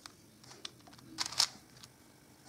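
Plastic 5x5 puzzle cube being turned by hand: a faint click about a third of the way in, then a short run of quick clacks as layers snap round, loudest a little past halfway.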